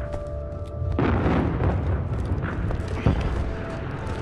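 A heavy explosion boom about a second in, swelling and then fading into a low rumble. A single sharp bang follows about three seconds in, over a sustained music score.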